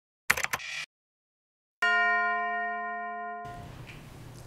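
Logo sting: two quick percussive hits, a pause, then one bell-like chime that rings and slowly fades until it is cut off as room tone begins.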